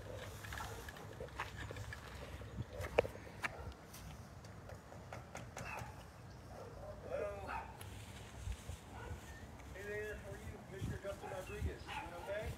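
Footsteps on concrete and the low rumble of a handheld phone being carried while walking, with faint voices around the middle and near the end.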